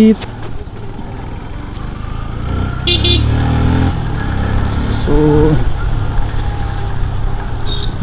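Motorcycle engine and road noise from the moving bike, a steady low rumble that grows louder around three seconds in as it pulls ahead through traffic. Short vehicle horn toots sound about three seconds and about five seconds in.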